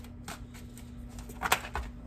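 A deck of tarot cards being handled and shuffled in the hands: a few light flicks of card stock, then a sharp, louder snap of cards about one and a half seconds in.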